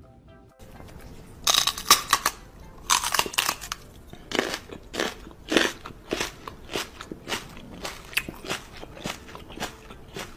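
A string of crunchy, smacking mouth sounds made close to the microphone, several a second in an uneven run, starting about a second and a half in and loudest near the start.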